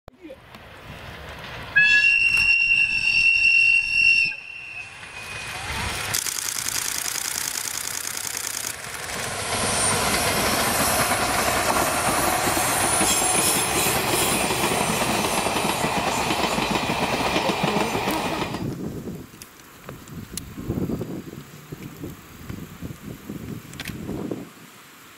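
A JNR Class DE10 diesel locomotive's horn sounds one loud held note about two seconds in, lasting about two and a half seconds. Then two DE10 diesel-hydraulic locomotives running double-headed pass, followed by four old-type passenger coaches rolling by with steady wheel-on-rail noise that dies away after about eighteen seconds.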